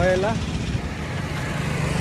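Road traffic going by, cars and motorcycles, heard as a steady low rumble.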